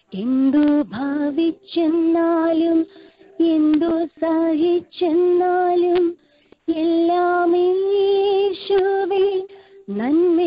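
A woman singing a devotional song alone, heard over a telephone line, in long held phrases with short pauses between them.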